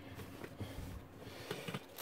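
Faint rustle of a cloth drawstring bag being handled and rummaged in, with a few light ticks near the end.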